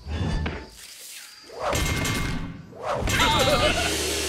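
Cartoon sound effects: a thump right at the start, then a swelling whoosh about two seconds in. A short wavering vocal noise from a character follows near the end, over music.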